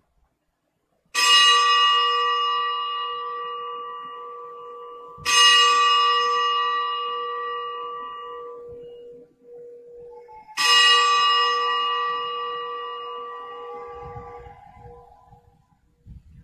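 A consecration bell struck three times, each stroke ringing out and slowly fading before the next, marking the elevation of the chalice after the words of consecration.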